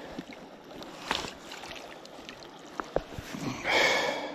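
Small creek running, with water splashing and a few light knocks as a trout is handled in a landing net at the water's edge; a louder splash near the end.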